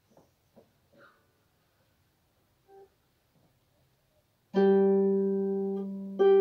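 Lever harp: a few faint clicks, then about four and a half seconds in a low plucked note rings out and slowly fades. It is the opening note of a slow air.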